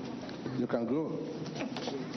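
Human voices in a crowded hall: a held, moan-like voice, then a short rising-and-falling vocal cry about halfway through, over a background of voices.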